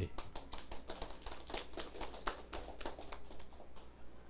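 Light applause from a small seated audience: scattered hand claps, several a second, fading out near the end.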